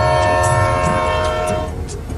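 Train horn sounding one long steady chord that cuts off near the end, over the low rumble of the passenger train.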